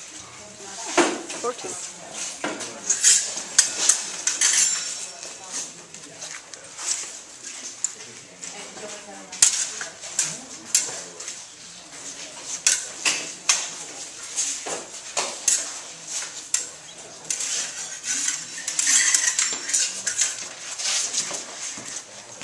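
Rapier blades clashing during a sparring bout: quick, irregular metallic clinks and scrapes as the blades meet, coming in busier flurries about three seconds in and again near the end.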